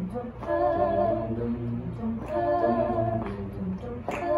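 Small mixed group of male and female voices singing wordless a cappella harmony, holding chords in two long phrases.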